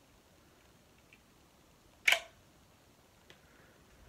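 A single sharp click of Lego plastic parts about two seconds in as the brick-built MP5 replica is handled, followed by a faint tick; otherwise quiet room tone.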